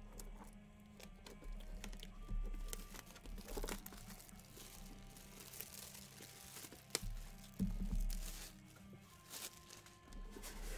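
Plastic shrink wrap crinkling and tearing as it is stripped from a sealed box of trading cards, in uneven rustling handfuls with a few sharp clicks.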